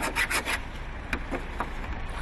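Something hard scraped in short strokes across the painted metal hood of a Range Rover, scratching the paint, several strokes in quick succession.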